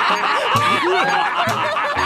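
Several people snickering and chuckling together, their laughs overlapping, over background music with a regular low beat.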